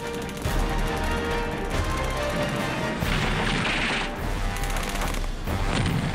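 Battle sound effects: rapid machine-gun fire in bursts, with rushing blasts about halfway through and near the end, over a sustained music score.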